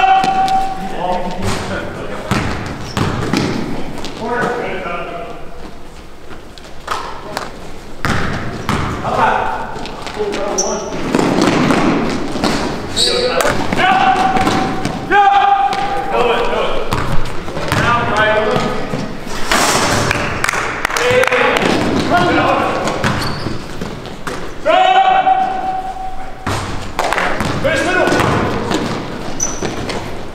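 Basketball game sound in a gymnasium: a ball bouncing on the court with repeated thuds, and players' voices calling out over the play.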